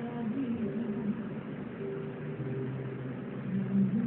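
Television audio of a stage music performance: a singer's held notes coming through the TV speakers.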